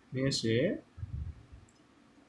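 A man's voice speaking a short Bengali phrase in the first second, then a second of quiet with faint soft sounds of a pencil on paper.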